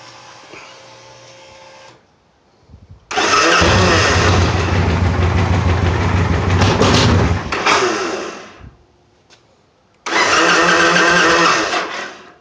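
2007 Victory Kingpin's V-twin engine with a modified factory exhaust. After a faint hum and brief cranking, it fires about three seconds in, runs loud for about five seconds and dies away. About ten seconds in it runs loud again for about two seconds.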